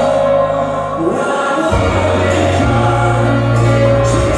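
Live pop-rock band music led by piano, with singing, heard loud from the audience floor of a concert.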